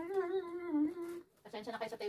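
A woman humming a tune: a long, slightly wavering held note, then after a short break a second hummed phrase begins about a second and a half in.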